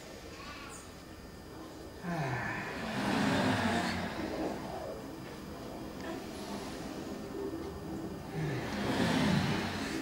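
Voices of a group of people, rising in two stretches: one starting about two seconds in and another near the end.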